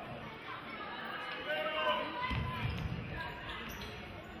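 Voices of spectators and players echoing in a school gymnasium during a basketball game, with a cluster of low thuds of a basketball bouncing on the hardwood court between two and three seconds in.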